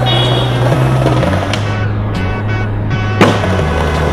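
Skateboard wheels rolling on stone paving, with one sharp clack of the board a little after three seconds in, over backing music with a heavy bass line.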